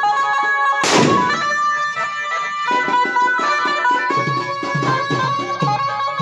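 Indian procession music from a DJ cart's horn loudspeakers: a reedy, accordion-like keyboard melody, joined by a steady drum beat from about three seconds in. A sharp burst of noise cuts through about a second in.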